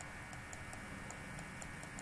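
Faint light ticks, unevenly spaced, a few a second, over a faint steady background hiss.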